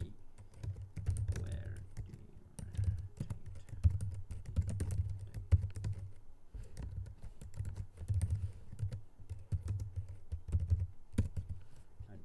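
Typing on a computer keyboard: irregular runs of keystrokes, each a click with a dull thump, with short pauses between the runs.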